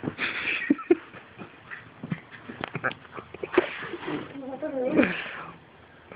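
A Boston terrier puppy huffing and scuffling at a turtle on a rug: a run of short sniffs, snorts and clicks, with a wavering vocal sound from the dog about four to five seconds in.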